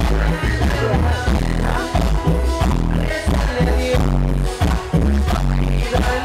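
Loud recorded dance music with a heavy, regular bass beat, played over a DJ's PA sound system.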